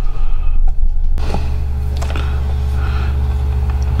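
A loud, steady low rumble with a faint hum above it, and a few faint clicks in the first second or so.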